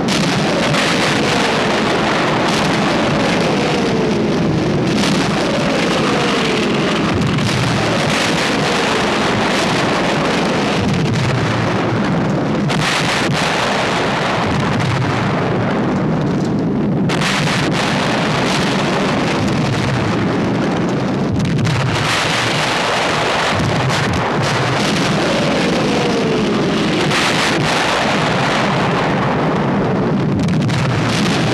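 Artillery barrage: a steady roar of shell explosions and rumble, with several falling whistles of incoming shells, most in the first few seconds and again near the end.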